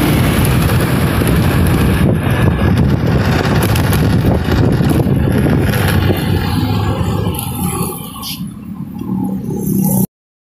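Busy road traffic, with motorbikes and cars passing close by in a dense, steady noise. The noise drops about seven seconds in, swells again near the end, then cuts off abruptly.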